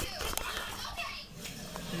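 Quiet room sound with faint children's voices in the background and one small click about a third of a second in.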